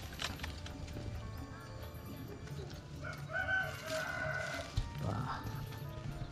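A rooster crowing once, a held call of about a second starting about three seconds in, over background music.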